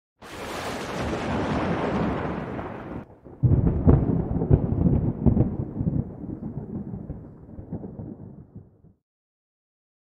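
Opening title sound effect: a rushing hiss for about three seconds, then a brief dip and a loud low rumble with crackles that slowly fades and cuts off about nine seconds in.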